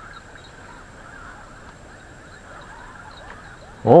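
Steady low outdoor background with faint, scattered chirping, and a short loud voiced exclamation at the very end.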